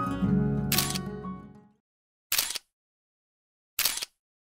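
Camera shutter clicks: one about a second in, then two more about a second and a half apart. Plucked-string music fades out under the first click and is gone within two seconds, so the last two clicks sound over silence.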